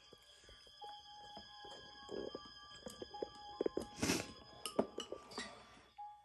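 Chopsticks clicking against a ceramic rice bowl while a person eats, over faint background music with held tones. The clicks come scattered and irregular, with a brief louder rustle about four seconds in.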